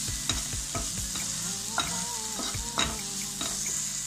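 Onion and tomato masala sizzling steadily in oil in a non-stick pan, while a wooden spatula is stirred through it, scraping and knocking against the pan several times a second.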